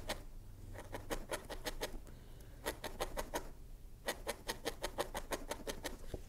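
A barbed felting needle stabbing quickly and repeatedly through wool into a foam felting pad, light sharp pokes about five or six a second in runs, with two short pauses, as a wisp of coloured wool is felted onto a small wool piece.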